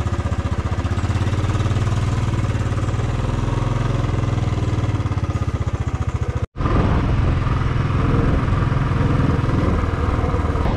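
Royal Enfield motorcycle's single-cylinder engine running at low speed with a steady, even thump. About six and a half seconds in the sound breaks off for an instant, then the engine carries on under way with a little more noise around it.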